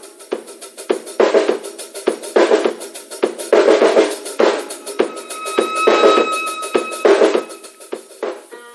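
Percussion music on a drum kit, with regular hits about twice a second. A ringing, bell-like tone sounds over the beat for about two seconds, starting about five seconds in.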